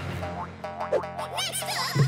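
Cartoon background music with springy boing sound effects, including a run of quick up-and-down boings in the second half.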